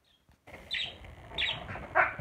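Budgerigar chirping: two short high chirps about a second apart, then a louder call near the end.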